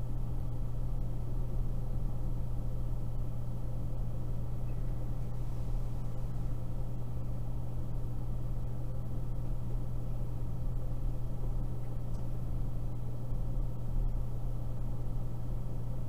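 Steady low electrical hum with hiss on an open phone line where nobody is talking, unchanging throughout.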